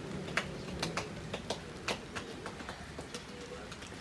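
Steady rain hiss with irregular sharp ticks of single raindrops, about three a second, during a thunderstorm.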